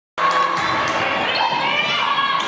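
Live sound of a basketball game in a gym: a basketball bouncing a few times on the hardwood court, with players' and spectators' voices in the hall.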